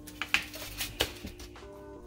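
Background music with steady tones, over about four sharp knocks and clinks as a foil-lined metal baking tray is picked up and handled.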